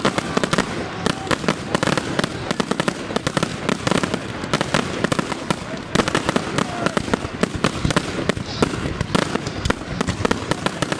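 Fireworks display finale: a rapid, unbroken barrage of bangs and crackling from aerial shells bursting overhead, many reports a second.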